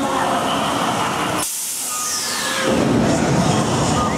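The Talocan top-spin ride's show effects running over splashing water. About a second and a half in, a sudden loud hiss sets in, with a whistle falling in pitch over the next second, before the lower churning noise returns.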